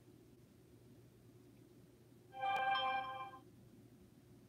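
A smartphone's alert chime: a short chord of several steady tones that starts suddenly about two seconds in and fades out after about a second, over a low steady hum.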